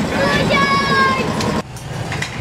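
Children's voices over passing street traffic, cutting off abruptly about one and a half seconds in.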